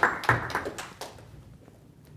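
Audience applause dying away: a thinning run of separate hand claps that fades out within about a second and a half.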